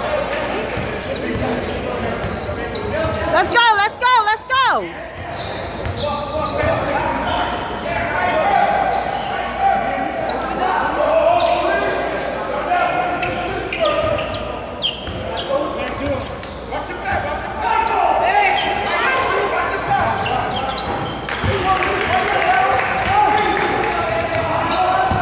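Live basketball game sound in a large, echoing gym: the ball bouncing on the hardwood court amid players' and spectators' voices. About four seconds in, a loud wavering tone lasts about a second and drops in pitch at its end.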